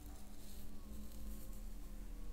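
Soft, sustained drone tones of relaxing spa-style background music, with faint rustling of fingertips rubbing through hair at the scalp.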